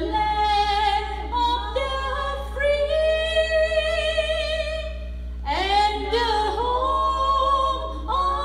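A group of women singing a national anthem without accompaniment, holding long notes, with a brief breath between phrases about five seconds in.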